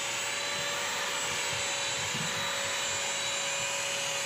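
BISSELL CrossWave wet/dry vacuum running steadily while it is pushed across wet tile: an even rushing suction noise with a constant hum-like tone.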